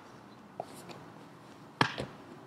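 Two grapplers moving on a jiu-jitsu mat: faint shuffling and small taps, then one sharp slap near the end, skin striking the mat or skin.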